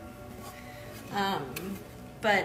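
A woman's voice speaking briefly about a second in, over faint background music.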